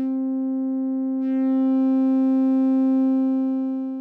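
A steady sustained synthesizer note passing through a Trogotronic m/277 tube VCA while its pan control is turned: the pitch holds but the tone brightens and grows louder about a second in, then dulls and drops near the end. The changing edge comes from the m/277's distortion around the zero-volt crossing being added to the channel being faded out.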